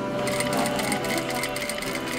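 Sewing machine stitching, a rapid, even run of clicks that starts a moment in, over background music.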